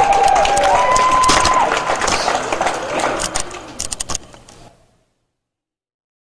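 Audience applauding and cheering, with shouted whoops over the clapping. The clapping thins to scattered claps and dies away about four to five seconds in.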